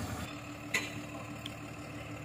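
Heavy truck engine idling with a steady low hum, and a single sharp click about three-quarters of a second in.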